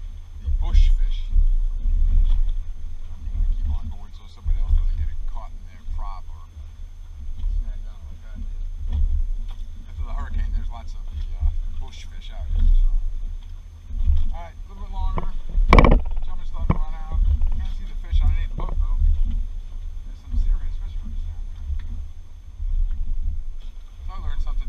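Wind buffeting the microphone in uneven gusts, a deep rumble that rises and falls. About two-thirds of the way through there is a single sharp knock.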